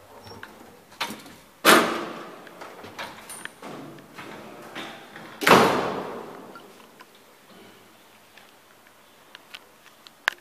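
Metal elevator gates being opened and banged shut: two loud clanging slams about four seconds apart, each ringing out for about a second, with a latch-like click just before the first.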